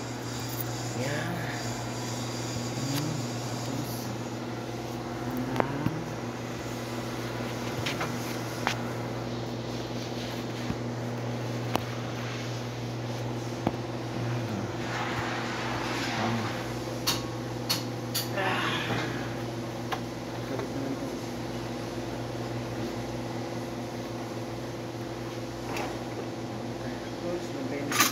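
A steady electric machine hum in a workshop, with scattered clicks and taps and faint voices in the background.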